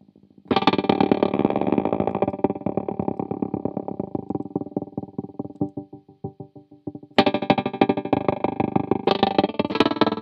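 Electric guitar chords played through a Lightfoot Labs Goatkeeper 3 tap tremolo/sequencer, the volume chopped into fast, even pulses. A chord rings out and fades over several seconds, and a new chord is struck about seven seconds in.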